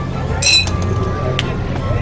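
A tossed plastic ring clinks off the tops of the ring-toss bottles: one bright ringing clink about half a second in, then a lighter click about a second later, over background music.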